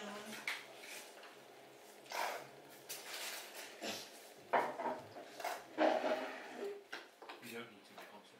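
Cutlery and plates clinking in a series of short knocks while people eat, with low indistinct voices in between.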